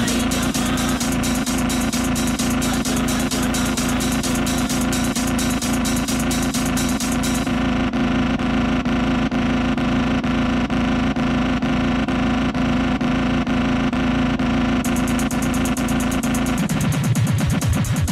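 Electronic dance music from a club DJ set: a steady, driving beat under a sustained droning synth note. The top end cuts out for about seven seconds in the middle and returns, and the drone stops about a second before the end, leaving the beat and bass.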